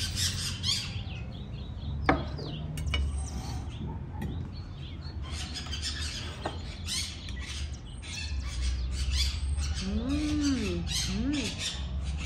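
Birds chirping, many short high calls throughout, with a sharp click about two seconds in and two lower rising-and-falling cries near the end.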